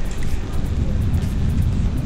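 Wind buffeting the microphone of a camera on a moving e-bike, heard as a steady low rumble mixed with road noise.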